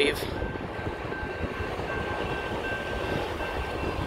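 Railroad crossing bell ringing in short repeating dings as the crossing gates lift after the train has passed, over a low steady rumble from the train.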